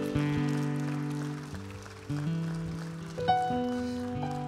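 Electric keyboard playing slow, held chords, the chord changing several times.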